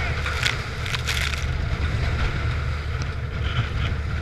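Coast Guard boat running in heavy weather: a steady low rumble of engine and wind on the helmet microphone, with a couple of brief hissing rushes in the first second and a half.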